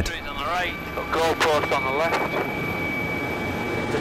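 Helicopter cabin noise: a steady high turbine whine over the running rotor, heard from inside as the air ambulance comes in to land.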